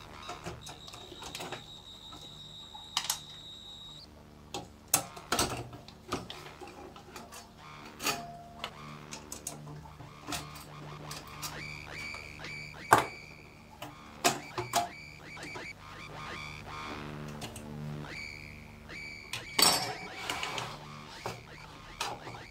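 Irregular clicks, taps and knocks of hands working on a computer power supply's sheet-metal casing and screws as it is taken apart, with sharper knocks about 13 and 20 seconds in.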